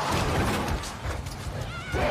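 Dense film sound effects of street chaos, with a high, wavering animal cry near the end.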